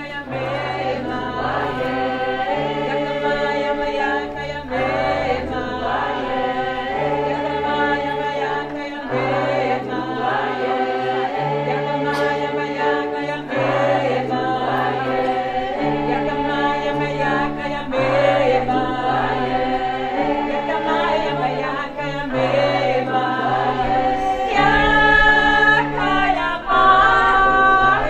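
A choir, mostly women's voices, singing a song in parts, over a low part that holds each note for a second or two. It grows louder near the end.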